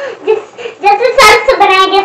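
A child singing in short phrases, fainter at first and louder from about a second in.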